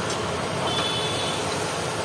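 Chicken chaap pieces deep-frying in a large kadai of hot oil: a steady sizzling hiss.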